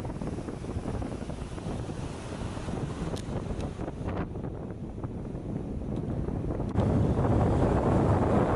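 Wind buffeting the microphone over the wash of breaking ocean waves, louder for the last second or so.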